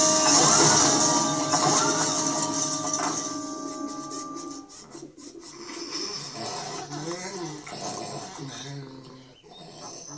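Cartoon soundtrack played through a television speaker: a loud, dense mix of held tones for the first few seconds that fades out, then quieter sounds that slide up and down in pitch.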